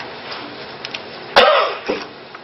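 A person coughs once, a sudden, loud, short sound about a second and a half in, with a smaller catch just after it, over faint room noise.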